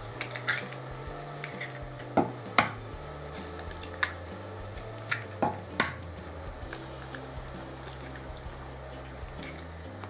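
Three eggs tapped against the rim of a glass jug and broken open: a handful of sharp, separate clicks of shell on glass. Soft background music with a low bass line runs underneath.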